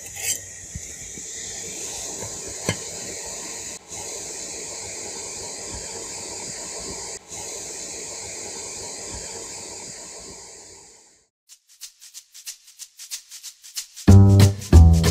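Steady hiss of background noise that cuts off about eleven seconds in, leaving near silence with faint, evenly spaced ticks.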